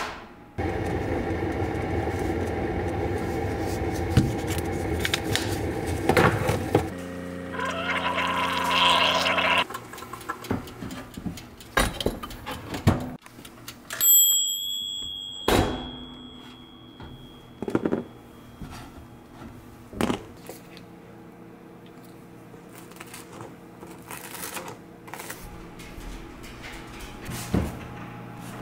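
A Keurig coffee maker brewing with a steady machine hum that changes pitch about seven seconds in and stops near ten seconds. Then scattered clicks and knocks, and about halfway a toaster oven's timer dial rings its bell once, the ring fading over a few seconds.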